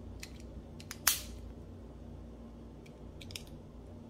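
LEGO plastic bricks clicking as arched pieces are pressed onto a model: a few light clicks, one sharp snap about a second in, and a small cluster of clicks near the end, over a low steady hum.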